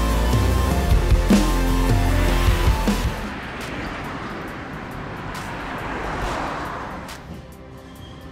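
Music with a heavy drum beat that cuts off about three seconds in, followed by the noise of a passing vehicle that swells and then fades away near the end.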